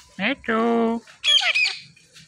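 Indian ringneck parakeet talking: a short two-syllable word in a mimicked voice, the second syllable held steady, followed just after a second in by a couple of shrill, high squawks.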